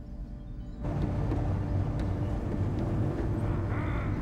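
Low steady hum inside a train car, then about a second in a sudden switch to the loud, steady rumble of the train running at speed.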